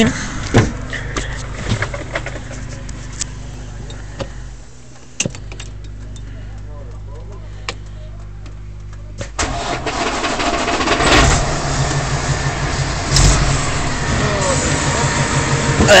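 620 hp Cummins ISX inline-six diesel truck engine, just started, running at a steady low idle with scattered clicks and knocks. About nine seconds in it becomes noticeably louder and stays so.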